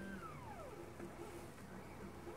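Stepper motors of a GRBL laser CNC moving its axes under G-code: a faint steady whine that glides smoothly down in pitch just after the start, then a run of short, evenly spaced low tones as the motors step along.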